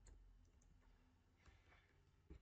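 Near silence with a few faint computer keyboard keystrokes, about half a second in and around a second and a half in.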